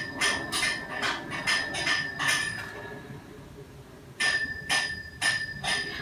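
Terry-cloth towel patted and rubbed against the face: soft, brushy swishes at about three a second, pausing for a moment midway and then resuming.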